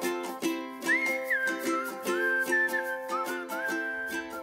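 Background music: a light tune of regularly plucked string notes with a high, gliding whistled melody over it.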